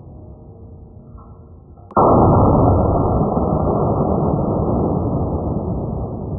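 A single loud gunshot about two seconds in, its noise dying away slowly over the next four seconds.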